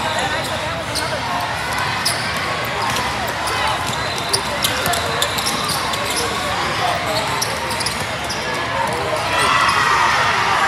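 Basketball game on a hardwood court: a ball bouncing and sneakers squeaking over a steady chatter of voices in a large hall, with voices growing louder near the end.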